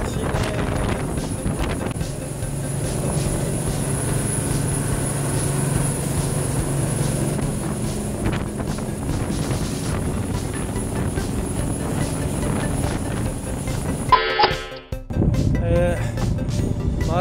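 Fishing boat underway at speed: its engine running steadily under the rush of wind and water past the hull. About two seconds before the end the sound breaks off suddenly.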